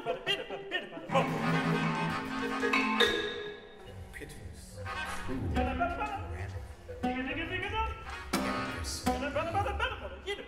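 Operatic singing over a small chamber ensemble of strings and percussion, in a modern art-music style, with sharp percussion strikes about three seconds in and again past eight seconds.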